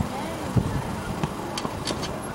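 Distant voices of youth rugby players calling out as a scrum engages, over a low irregular outdoor rumble. Two short sharp sounds come near the end.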